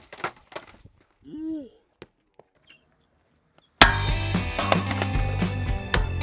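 A few sharp clacks of a skateboard hitting concrete and a short shout from a person in the first two seconds, then a brief lull. About two-thirds of the way through, loud guitar music starts suddenly and becomes the loudest sound.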